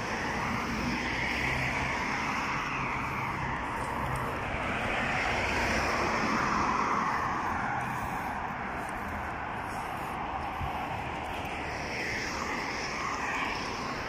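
Road traffic: cars driving past on a wide road, the tyre and engine noise of each swelling and fading, loudest about six to seven seconds in.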